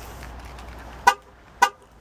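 2009 Chevrolet Impala's horn giving two short chirps about half a second apart, the remote keyless-entry lock confirmation.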